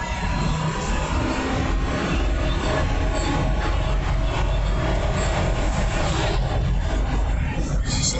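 A 2001 Ford Expedition's 5.4-litre Triton V8, fitted with a throttle body spacer, pulls hard under heavy throttle from highway speed and is heard from inside the cabin. The revs climb, then drop as the automatic gearbox upshifts in the second half.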